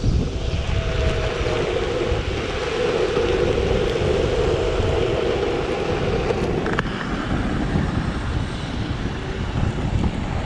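Wind buffeting the microphone while riding an electric skateboard down the street, a steady rumble. A steady droning hum sits over it and cuts off abruptly about seven seconds in.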